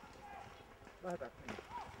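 Footsteps of several people walking together on soft ground. From about a second in, voices start talking over the footsteps and are louder than them.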